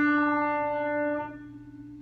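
Piano playing one held note of the tenor line. It fades steadily and is released about a second and a half in, with quieter notes of the line starting again at the end.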